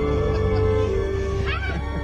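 Background music with steady held notes; about one and a half seconds in, a dog gives a short, rising, excited whine.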